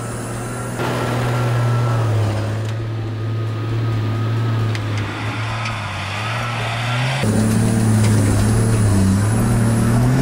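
A four-wheel-drive's engine labouring steadily in low range as it crawls up a steep, dusty rock-and-rut hill climb with the rear locker engaged. The pitch holds steady and rises slightly in places.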